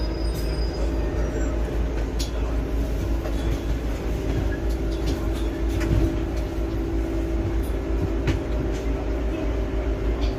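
Inside a moving London double-decker bus, heard from the upper deck: a steady low rumble and hum of the bus's drivetrain, the hum growing a little stronger about four seconds in, with scattered light rattles and clicks from the cabin.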